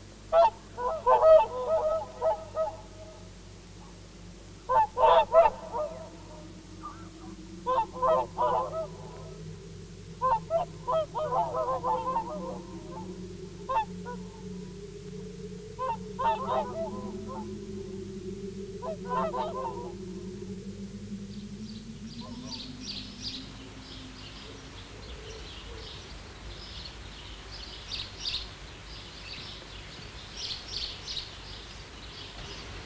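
Abstract electronic soundtrack music: clusters of goose-like honking calls come every few seconds over two slowly wavering, gliding low tones. About two-thirds of the way in the honks stop and high twittering chirps take over.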